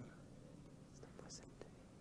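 Near silence: room tone, with a few faint ticks and a soft breathy hiss a little past halfway.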